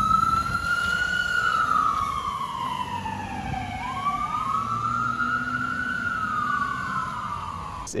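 Ambulance siren in wail mode: a slow rising and falling tone, twice up and down, over a low rumble.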